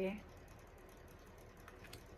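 Faint clicks and light taps of stiff oracle cards being handled: a card slid off the deck and laid down on the table, with a couple of sharper clicks near the end.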